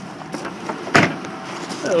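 A single sharp knock about a second in, over faint handling rustle.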